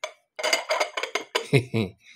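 A quick run of light glass clinks and taps from a ribbed glass candy jar and its glass lid being handled, followed near the end by a short laugh.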